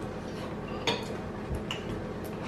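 A metal fork clinks sharply against a dish about a second in, with a fainter tick shortly after, over a low steady hum.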